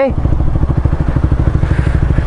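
Honda CBR125R's 125 cc single-cylinder four-stroke engine idling with an even, rapid pulse, through an aftermarket Ixil Hyperlow exhaust.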